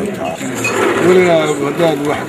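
A man speaking, close to the microphones.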